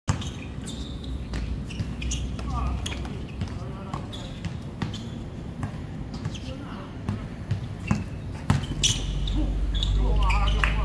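Basketball being dribbled and passed on a hard court during a pickup game: irregular sharp thuds of the ball, mixed with brief shouts and calls between players.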